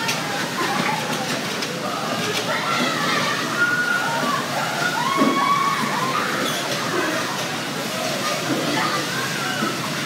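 Busy bumper-car floor: a steady din of many overlapping voices shouting and chattering over the rumble of electric bumper cars rolling across the floor.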